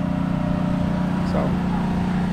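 Steady low machine hum, even in pitch, with wind rumbling on the microphone beneath it; a single spoken word about a second in.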